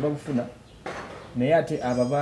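A man speaking, with a sharp clink, like dishes or cutlery, just under a second in, in a pause of his speech.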